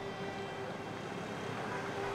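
A motor vehicle's engine running steadily, with a faint constant tone.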